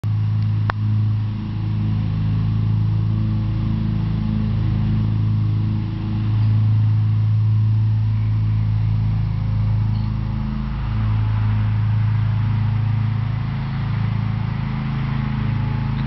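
A steady low mechanical hum, like a motor running close by, with a single sharp click under a second in.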